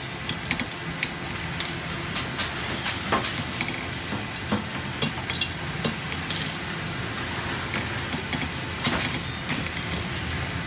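A steady hissing noise with irregular sharp clicks and knocks scattered through it, a few every second.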